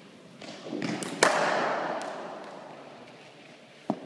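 A sharp crack of a cricket ball being struck in an indoor net, after a short build-up of noise, followed by a long echo from the hall that dies away over about two seconds. A short knock follows near the end.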